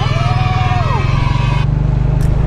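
Motorbike running along a dirt road, heard from the rider's back with a loud, rough low rumble of engine and wind on the microphone. A short falling tone sounds about a second in.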